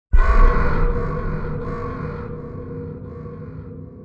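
Intro sting for the title card: a sudden deep hit with a held chord that slowly fades away.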